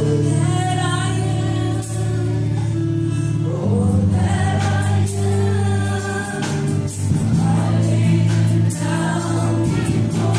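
A live church worship band playing a slow worship song: a female lead singer with electric bass guitar and drum kit, the sung lines "All that I am, all that I have, I lay them down before You, O Lord". The bass notes hold for a few seconds at a time, with light drum hits over them.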